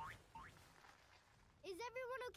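Two cartoon "boing" sound effects, each a short rising twang, about half a second apart.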